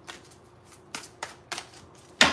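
A deck of cards being shuffled by hand, faint, with four short crisp strokes in the second half.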